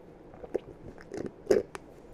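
Close-miked mouth sounds of a person sipping through a straw: a few soft, wet clicks and smacks, the loudest about one and a half seconds in.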